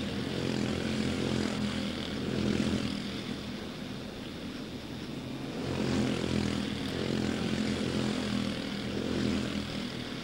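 Several quarter midget race cars with Honda 160 single-cylinder four-stroke engines running at racing speed, the buzz swelling as cars pass close by about two and a half and six seconds in.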